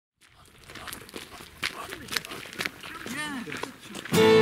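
Footsteps of several people walking on a paved lane, irregular steps, with brief voices among them.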